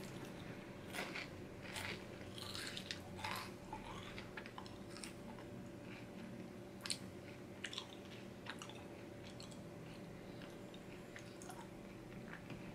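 Faint mouth-closed chewing of a crunchy potato chip topped with a piece of peppermint patty: a scatter of soft crunches, busiest in the first five seconds and thinning out after.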